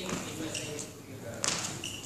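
Court shoes squeaking and shuffling on a hall floor during badminton footwork, with a sharp tap about one and a half seconds in, echoing in a large hall.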